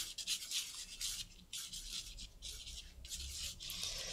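Black pen nib scratching on watercolour paper in small looping strokes as curly hair is drawn: a faint, scratchy rasp repeated in short, irregular strokes.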